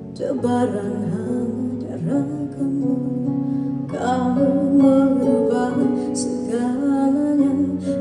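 A woman singing a song live into a microphone in phrases, over band accompaniment.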